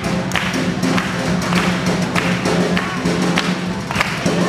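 Live swing band playing, with a regular beat.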